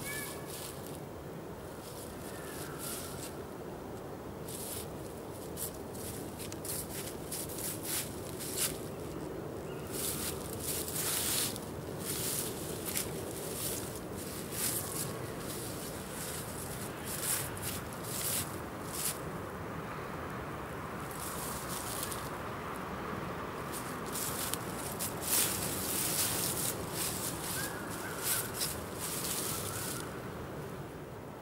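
Fallen autumn leaves rustling and crackling irregularly underfoot as a person shifts and turns in deep leaf litter, over a steady outdoor background hum.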